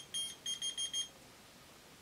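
Whistle-activated LED key finder keychain beeping in answer to a whistle: a rapid series of about five short, high electronic beeps that stops about a second in.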